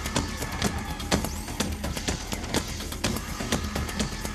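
Industrial electronic band playing live at concert volume: a steady programmed drum beat of about two hits a second over heavy synth bass.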